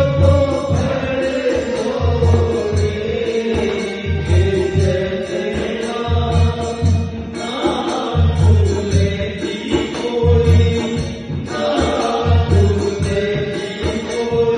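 A man singing a song into a microphone, accompanied by a dholak (rope-laced barrel drum) playing a repeating rhythm of low strokes.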